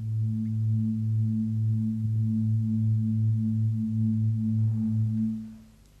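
A steady low humming tone with a few overtones, wavering slightly, that fades out near the end.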